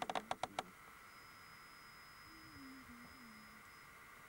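A quick run of about six sharp clicks or knocks in the first half second, then a faint steady hum with a thin high whine over it.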